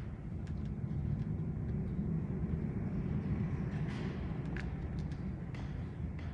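Steady low rumble of room noise in a large church, swelling slightly in the middle, with a few faint scattered clicks and soft footsteps as a robed person walks across the chancel.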